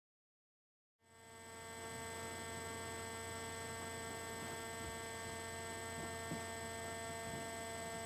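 Digital silence for about a second, then a steady electrical hum with several fixed high tones over a faint hiss: the recording gear's own noise, with no other sound over it.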